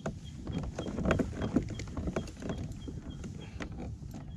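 Spinning reel being wound against a hooked fish from a kayak: a faint high tick about three times a second from the cranking, among irregular knocks and clicks of the rod, reel and kayak.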